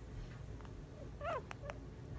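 Guinea pig giving one short, wavering squeak that falls in pitch, followed by two sharp clicks.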